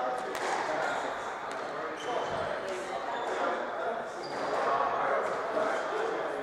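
Squash rally: the rubber ball cracks off rackets and walls a few times, with short high shoe squeaks on the wooden court floor, over steady chatter of voices in the hall.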